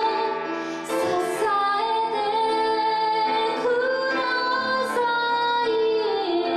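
A woman singing with her own grand piano accompaniment, her voice holding long notes that glide between pitches, with short breaths or sibilant consonants about one second and five seconds in.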